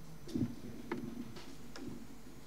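A few soft, irregular knocks and clicks of handling noise, about five in two seconds, over faint room tone.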